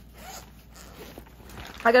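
Zipper on a small teal quilted makeup bag being pulled open, a faint rasping.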